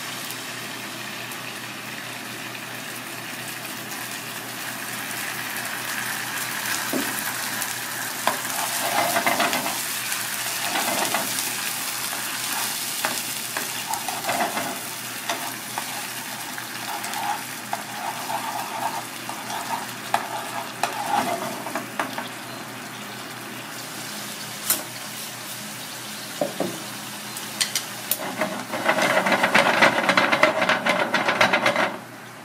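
Red sauce and garlic sizzling in oil in a nonstick frying pan, stirred with a spoon that scrapes the pan. Near the end the stirring gets louder and busier as a wooden spatula works the sauce.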